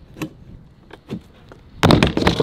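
Stunt scooter rolling on a skatepark mini-ramp, with a couple of light knocks, then a loud sudden clatter near the end as the rider bails the trick and the scooter and his feet slam onto the ramp.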